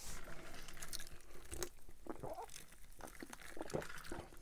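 Close-miked chewing of a mouthful of chili cheese dog: soft, wet mouth sounds with a few small clicks.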